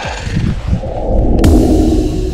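Video transition sound effect: a swelling whoosh that peaks with a sharp hit about one and a half seconds in, bridging two pieces of background music.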